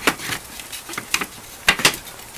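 A wooden stake-side rail of a Radio Flyer wagon knocking and clicking against the wagon's metal stake brackets as it is worked down into place: a few sharp knocks, with a quick pair near the end.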